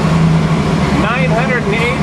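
Twin-turbo 427 cubic-inch small-block Chevy running steadily on the engine dyno, a loud constant low drone, with voices over it about a second in.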